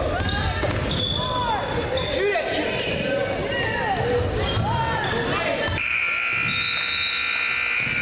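Basketball dribbling and sneakers squeaking on a hardwood gym court. About six seconds in, a steady scoreboard buzzer sounds for roughly two seconds.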